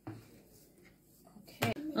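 Mostly near silence: room tone, with a faint click at the start. Near the end there is a sharp knock, and then a woman's voice starts speaking.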